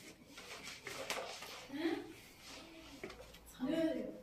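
A cloth rubbed in several strokes over a vinyl floor sheet, with voices talking in the background and a voice rising near the end.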